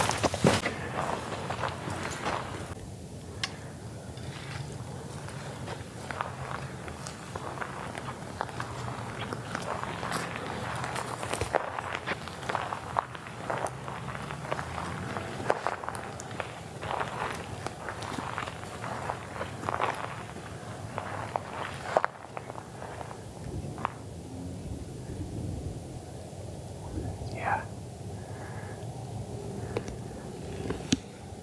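Footsteps crunching and swishing through tall dry grass and brush, in irregular steps. About two-thirds of the way through, the sound drops and the steps come only now and then.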